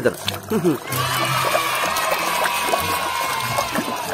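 Water rushing and splashing in a plastic basin as a muddy toy figure is washed: a steady hiss lasting about three seconds, starting about a second in, with a faint ringing tone through it.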